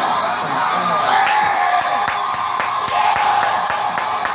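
Studio audience laughing and whooping, with clapping joining in about a second in.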